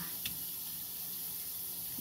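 Sliced onions sizzling as they go into a hot wok: a steady hiss, with one light tap about a quarter second in.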